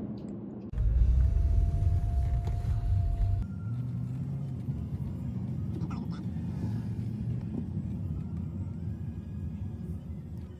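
Car running, heard from inside the cabin: a loud low rumble with a steady whine for the first few seconds, then a quieter, even low hum as the car rolls slowly.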